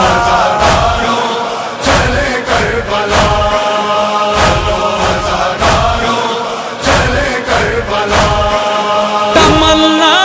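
Noha interlude: a backing chorus chants in long held notes over a steady beat of heavy thumps, the matam chest-beating rhythm of a Muharram lament.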